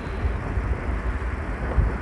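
Wind buffeting a handheld phone's microphone while riding a bicycle, with rolling tyre noise on asphalt. The rumble is uneven and gusty, with no steady motor tone.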